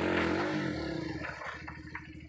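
Dirt bike engine running at low revs, with a short throttle blip in the first second that dips and rises in pitch, then dropping back to a steady idle.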